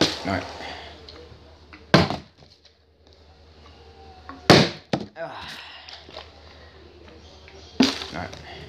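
A partly filled plastic water bottle landing hard after flips: three sharp thuds about two to three seconds apart, the middle one loudest.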